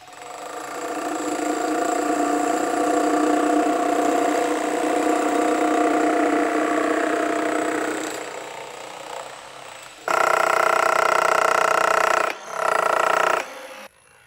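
Hilti electric demolition breakers (jackhammers) hammering into concrete slabs as a steady pitched machine sound that builds over the first couple of seconds and fades out around eight seconds in. About ten seconds in, a breaker runs again, louder, in two bursts with a short stop between.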